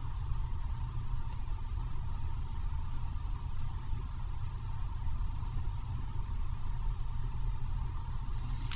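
Steady low hum with a faint even hiss, background noise picked up by the recording microphone, with no distinct events.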